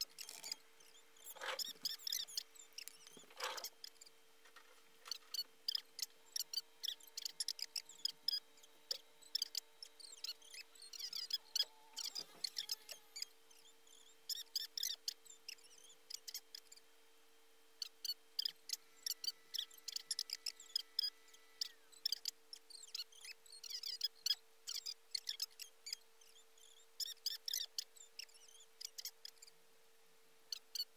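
Irregular small clicks and ticks in quick bursts, with a couple of soft knocks near the start, over a faint steady electrical hum.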